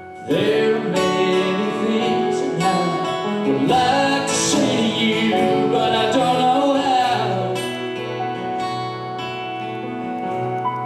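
Live band music led by an acoustic guitar, coming in loudly about a third of a second in after a brief lull, with a bending melody line over the chords; it eases off a little in the last few seconds.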